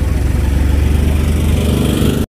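A small engine running steadily at idle, with a rapid, even pulsing.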